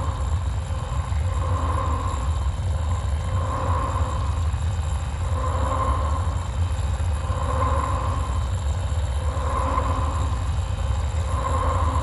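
Soundtrack sound design: a deep, steady rumble under a soft tone that swells and fades at a regular beat, about once every two seconds, like a slow pulse.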